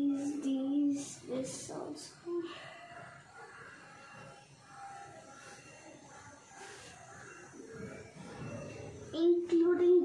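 A girl's voice in short held sounds near the start and again near the end, with brief rustling of clothes and a plastic carrier bag as garments are stuffed into it.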